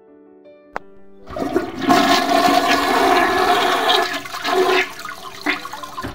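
Toilet flushing: a click, then a rush of water that builds over about half a second, runs for about three seconds and tails off.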